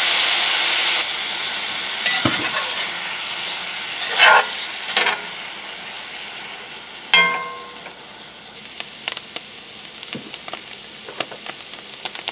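Diced potatoes and ham sizzling in a cast iron skillet while a spatula stirs and scrapes through them. The sizzle is loudest at first and dies down, with scraping strokes around two and four seconds in and a ringing clink about seven seconds in.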